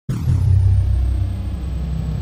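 A deep, loud rumble that starts abruptly just after the start and holds steady, with a brief bright hiss at its onset.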